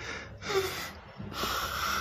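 A man crying, drawing two sharp, noisy breaths through a sob; the second, longer one starts a little after midway.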